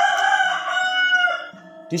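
A rooster crowing: one long call lasting about a second and a half that dips in pitch at the end.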